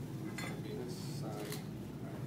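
A few short metallic clicks and scrapes as a Ka-Bar knife is handled and wiped, over a steady low hum.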